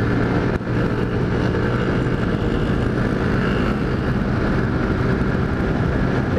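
Single-cylinder Honda CG Titan motorcycle engine running steadily at highway speed, heard from the rider's helmet with wind rushing over the microphone.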